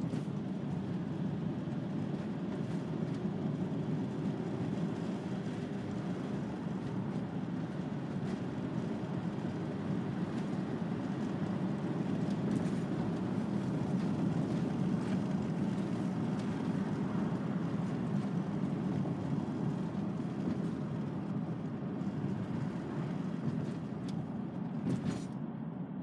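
Steady engine and tyre rumble inside the cabin of a moving VW T5 Transporter van, with a single sharp click near the end.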